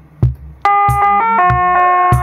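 Electronic bell-like tones from a circuit-bent Lego music toy, starting about half a second in and stepping between a few pitches, over an even beat of kick drum and sharp clicks from a Boss DR-55 Dr. Rhythm drum machine synced to the toy.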